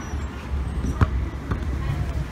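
Soccer ball kicked on a grass field: one sharp thud about a second in, then two lighter knocks about half a second apart as the ball is played again.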